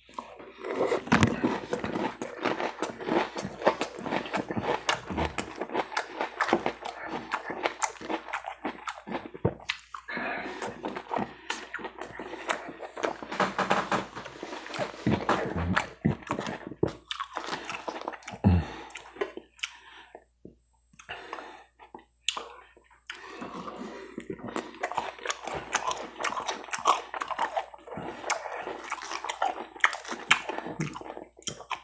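Close-miked chewing and crunching of a mouthful of raw salad (romaine, spinach, carrots, peppers, almonds) in ranch dressing: dense, irregular wet crunches. The chewing stops for about two seconds around two-thirds of the way through, then starts again.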